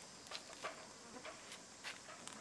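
Faint, steady, high-pitched insect buzz, with scattered light clicks and rustles of twigs and leaves as young macaques clamber through a shrub.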